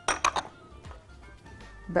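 A spatula knocking against the rim of a glass mixing bowl: about four quick clinks in under half a second, tapping off tahini, with faint background music underneath.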